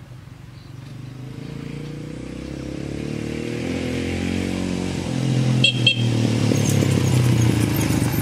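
Honda NX 150 motorcycle's single-cylinder four-stroke engine approaching on a dirt road and passing close by, growing steadily louder to a peak near the end. A few sharp clicks sound about two-thirds of the way through.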